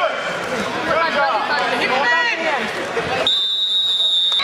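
Voices shouting encouragement at a wrestling match in a gym. About three seconds in, the voices give way to a steady high-pitched tone lasting about a second.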